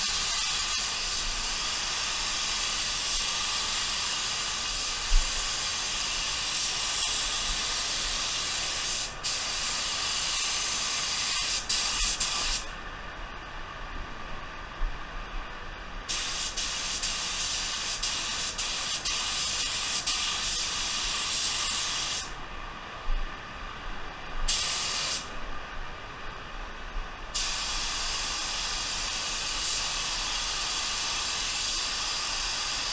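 Gravity-feed spray gun hissing steadily as compressed air atomizes base coat paint. The hiss stops three times as the trigger is let off between passes: once for about three seconds just before the middle, and twice briefly near the end.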